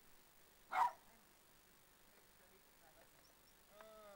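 A dog barks once, a single short, sharp bark about a second in. Near the end a brief call falls in pitch.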